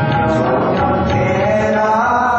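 Sikh kirtan: devotional hymn singing with sustained instrumental accompaniment, running steadily.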